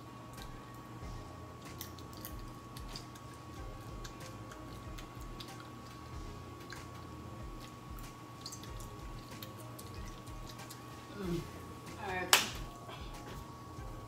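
Faint chewing and mouth sounds of a bite of cooked pasta being tasted, over a steady hum. Near the end comes a brief vocal sound, then one sharp click.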